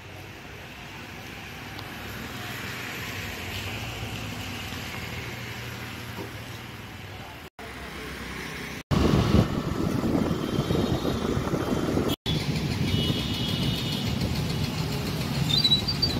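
Steady outdoor background noise of a busy town street, with vehicle noise and a low hum, growing louder. It cuts out abruptly three times, and after the second cut, about nine seconds in, it is much louder.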